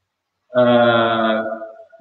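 A man's voice holding one long, level-pitched hesitation sound, a drawn-out "uhh", starting about half a second in and lasting about a second and a half.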